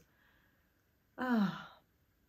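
A woman's single short voiced sigh, falling in pitch, a little over a second in.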